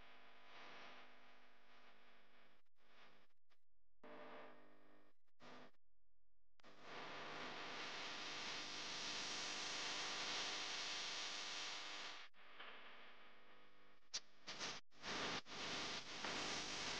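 Rushing mountain stream tumbling over boulders: a steady rush of white water that grows louder and fuller about seven seconds in. It is broken by several brief silent gaps.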